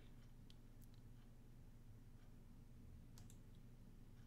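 Near silence over a low steady hum, with a few faint computer mouse clicks, the clearest two close together near the end.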